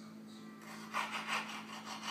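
A dachshund sniffing rapidly: a run of short rasping breaths, about five a second, starting about half a second in, over a faint steady hum.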